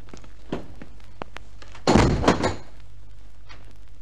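Radio-drama sound effect of a heavy jail door: a few light knocks, then a loud clanking bang about two seconds in, as the door is worked to let a prisoner into the room. A low steady hum from the old recording runs underneath.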